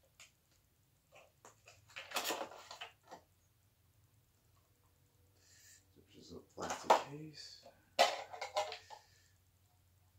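A clear plastic display case being handled and pried apart, with a brief rustle of plastic about two seconds in. More plastic handling follows in the second half, mixed with indistinct mumbling.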